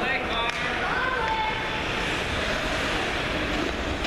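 Ice rink ambience during a youth hockey game: spectators' voices and short shouts over a steady hall noise, with a sharp knock about half a second in, typical of a stick or puck hitting the boards.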